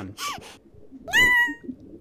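A cartoon character's frightened vocal effect: a couple of short breathy gasps, then, a little past halfway, one high, thin whimpering squeak of about half a second that rises and then holds.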